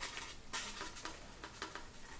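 Faint rustling and light, scattered taps of hands handling a silver ribbon against a rhinestone-covered picture frame.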